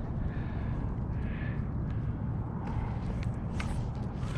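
Fly line being cast from a kayak: a faint soft swish about a second in and a few light clicks near the end, over a steady low rumble.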